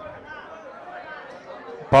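Faint murmur of background voices in the room, with a man's loud speech into a microphone coming back in at the very end.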